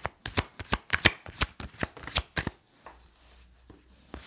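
A deck of tarot cards being shuffled by hand: a rapid run of crisp card snaps, about six a second, for the first two and a half seconds, then a quieter stretch with only a few soft clicks.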